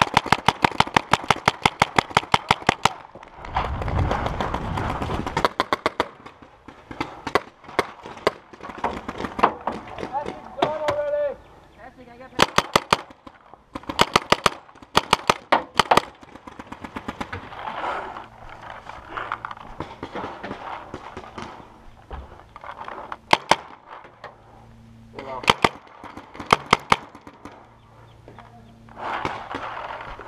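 Paintball markers firing rapid strings of shots in several bursts, the longest running for about the first three seconds and shorter bursts following later on.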